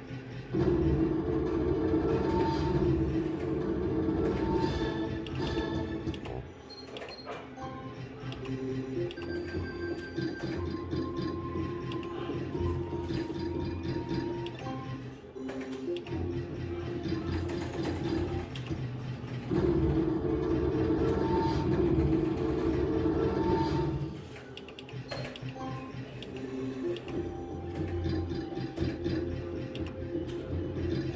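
Electronic music and sound effects from a Novoline Book of Ra slot machine playing its free spins, heard through the machine's own speaker. The sound comes in two louder stretches of several seconds each, one near the start and one about two-thirds through.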